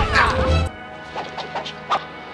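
A film brawl soundtrack: smashing and hitting sounds over music. It drops abruptly about two-thirds of a second in, leaving quieter music with a couple of short hits.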